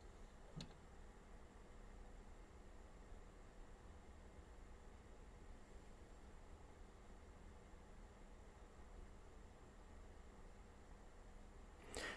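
Near silence: faint room tone and hiss, with one short faint click a little over half a second in.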